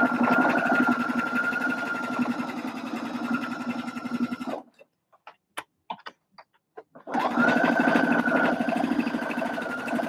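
Electric sewing machine stitching a seam at a steady speed with a constant whine over fast, even needle strokes. It stops a little before halfway, leaving a few faint clicks while the fabric is handled, then starts again and runs through the last few seconds.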